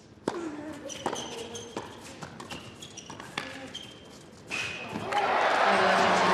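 Tennis ball struck by rackets in a quick doubles rally, a hit about every second, with shoe squeaks on the hard court between the shots. About five seconds in, the crowd breaks into loud cheering and applause as the point ends.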